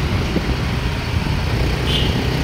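A small vehicle engine running steadily on the move, with a low rumble and road and wind noise.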